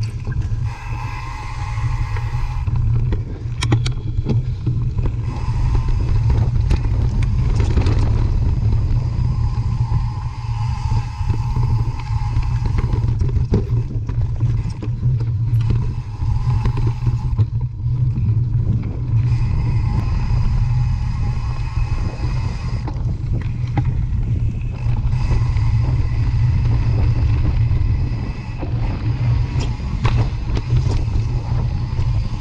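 Mountain bike riding over a dirt trail, heard from a camera on the bike or rider: a heavy, steady rumble of wind and tyre noise on the microphone. Scattered knocks and rattles come from the bike over roots and bumps, and a higher buzz comes and goes.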